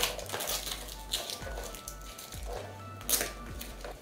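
Clear plastic shrink wrap crinkling in short bursts as it is peeled off a cardboard card-deck box, the loudest burst near the end. Background music with a steady bass runs underneath.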